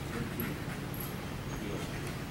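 German Shepherd whimpering faintly over a steady low hum.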